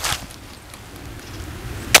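HK Mark 23 .45 ACP pistol firing: a sharp report right at the start and a louder one near the end. The second shot misses the green paint target.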